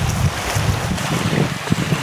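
Wind buffeting the microphone: an uneven low rumble over a steady hiss.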